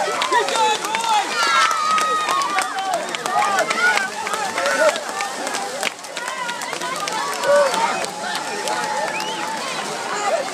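Crowd of spectators talking and calling out at once, many overlapping voices including high children's voices.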